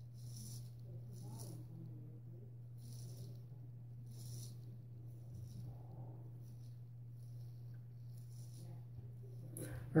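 Gold Dollar 66 carbon-steel straight razor scraping through lathered stubble on the neck, shaving with the grain: a series of short, faint scrapes about a second apart, over a steady low hum.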